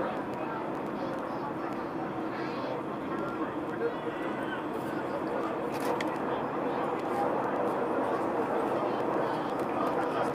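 Indistinct passenger chatter inside an MRT train carriage, over the train's steady running noise in a tunnel.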